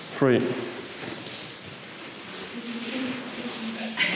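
A man's voice says the count 'three' just after the start, then faint room noise, with a faint steady low hum in the last second and a half.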